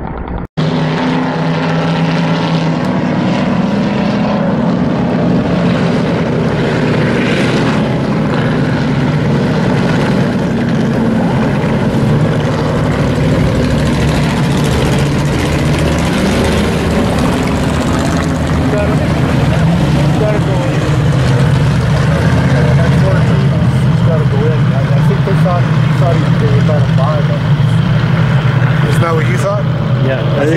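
Hobby stock race cars running on the track, a loud, steady engine drone from several cars at once. The sound drops out briefly about half a second in.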